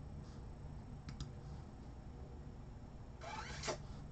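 Quiet room with two faint clicks about a second in, typical of a computer mouse, then a short rustling swish near the end.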